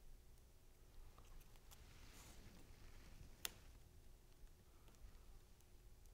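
Near silence: faint room tone with light handling of small paper pieces and one sharp small click about three and a half seconds in.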